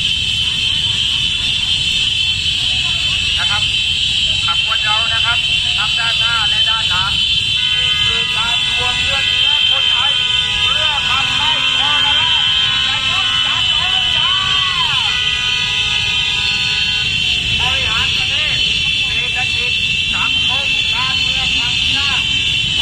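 Street protest convoy of many motorcycles: a low rumble of motorcycle engines under a continuous shrill, high-pitched din and shouting voices. Several vehicle horns sound together, held for several seconds in the middle.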